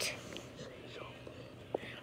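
Faint rustling of a plush toy being handled close to the microphone, with a small click near the end.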